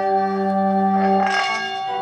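Singing bowl sustaining one steady ringing tone, with lower held notes changing pitch underneath it. A brief rush of noise comes a little past the middle.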